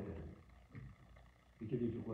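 A man's voice preaching. It trails off in the first half-second and starts again a little before the end, with a short pause between.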